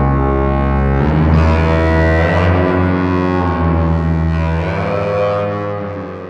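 Synthesizer drone pad: two E350 Morphing Terrarium wavetable oscillators mixed and saturated through a vacuum-tube VCO mixer, then sent through delay and spring reverb. A thick, sustained chord whose tones shift as it goes, fading out near the end.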